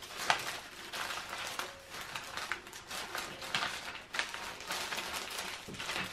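Folded paper pattern sheets and a clear plastic bag rustling and crinkling as the sheets are slid into the bag and smoothed down by hand, a soft run of irregular crackles.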